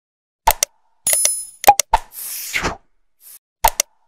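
Animated subscribe-button sound effects: a pair of short pops or clicks, a bright bell ding, two more clicks, then a whoosh. The click sequence starts over near the end.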